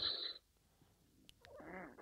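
A pause with near silence, then a man's brief, soft thinking hum, a hesitant "mmm" or murmur, about a second and a half in.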